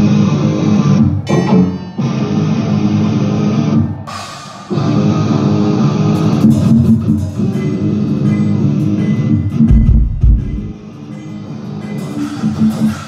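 Live rock band playing loud through the PA: a distorted electric guitar riff with drums, stopping briefly twice in a stop-start pattern, with heavy low kick-drum hits near the end.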